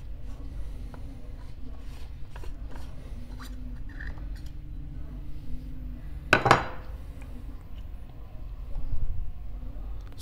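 Aluminium parts of a Turin DF83 flat-burr coffee grinder being handled as its adjustment collar is taken off and the top burr carrier lifted away: light metal clicks and rubbing, with one louder knock about six and a half seconds in.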